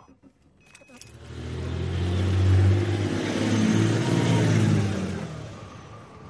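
A car's engine as the car drives by: a couple of faint clicks about a second in, then the engine sound swells, holds, and fades away near the end.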